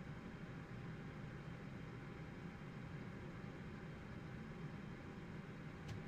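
Faint steady hiss and low hum of microphone room tone, with no kick drum or music playing. There is one small click near the end.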